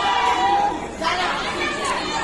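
Crowd of spectators chattering and calling out, many voices overlapping, with a brief lull about a second in.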